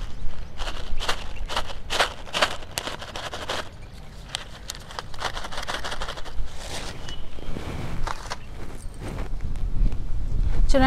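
A plastic seed packet crinkling and rustling as it is handled, with a quick run of sharp crackles in the first few seconds, then quieter rustling while bean seeds are tipped out into a palm.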